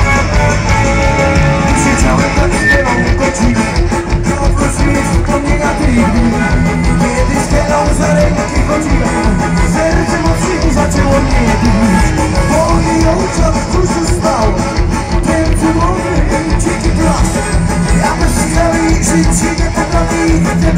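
A live rock band playing loud through a stage sound system, recorded from within the audience.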